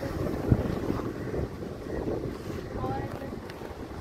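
Steady rumble of a moving car heard from inside the cabin: road and wind noise, with one short knock about half a second in.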